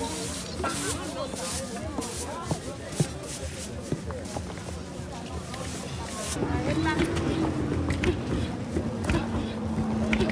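Chatter and a laugh from a group of women, with scattered knocks. From about six seconds in, several long wooden pestles thud unevenly into wooden mortars as the women pound fonio (acha) to strip its husks.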